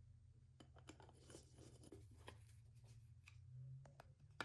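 Very faint, scattered small clicks and light scrapes of a screwdriver doing up the screws of the points cover on a Kawasaki Z1B engine, over a low steady hum.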